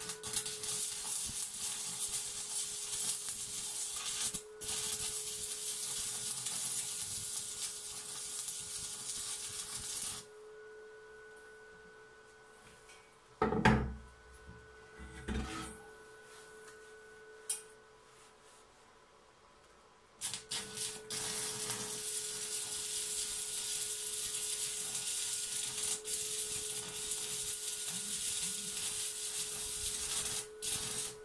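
Stick-welding arc from a small inverter welder (Einhell BT IW 100) burning a 2.5 mm stainless electrode on stainless square tube. The arc crackles and hisses steadily for about ten seconds, then stops. Two knocks come in the pause, and the arc is struck again about two-thirds in, sputtering briefly before settling back into a steady crackle.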